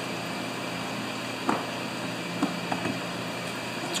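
Steady hum of a running shop heater, with a few light taps in the middle.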